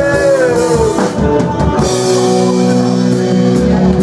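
A rock band playing live and loud, with electric guitars, bass guitar and drum kit.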